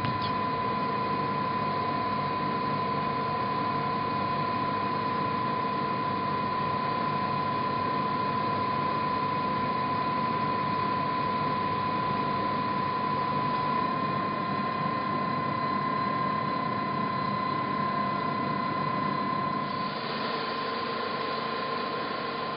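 Steady machine hum of laboratory equipment with a constant high whine running through it. The hum changes slightly near the end.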